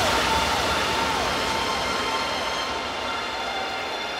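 Hardstyle electronic music in a beatless breakdown: a repeating falling synth figure over a hissing noise wash, slowly fading.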